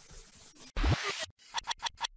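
Logo-animation sound effect: a noisy swoosh with a low thump about three-quarters of a second in, then a quick run of four short scratch-like clicks near the end.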